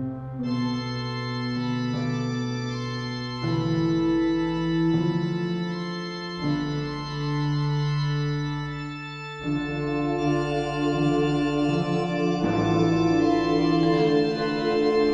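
Organ music: slow held chords that change about every three seconds.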